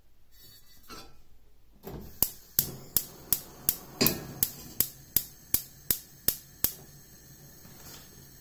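A run of about a dozen sharp, evenly spaced knocks, close to three a second, with one heavier thud in the middle; it starts about two seconds in and stops before seven seconds.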